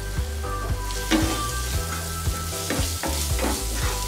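Onions, tomatoes and spices frying in a nonstick kadai, sizzling steadily while a spatula stirs them, with short scrapes and taps of the spatula against the pan.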